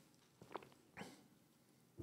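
Near silence with two faint gulps, about half a second apart, as a man swallows water from a drinking glass.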